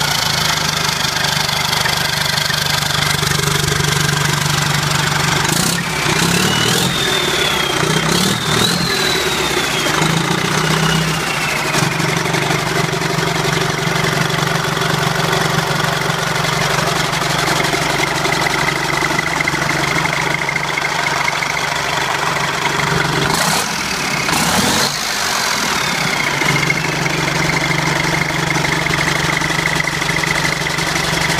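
Freshly rebuilt Detroit Diesel Series 50 four-cylinder diesel engine running steadily after start-up. Twice it climbs in speed and settles back, once about six seconds in and again near the end.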